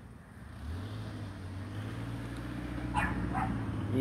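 A motor vehicle's engine hum, starting under a second in and growing steadily louder as it approaches, with two short dog barks about three seconds in.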